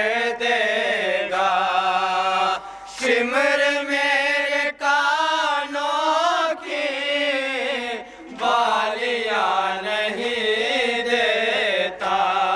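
Male voices chanting a Shia noha (mourning lament) in Urdu over microphones, in long sung lines with short breaks between them.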